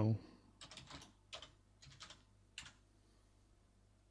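Typing on a computer keyboard: a quick, faint run of about eight keystrokes, entering a short file name, that ends a little under three seconds in.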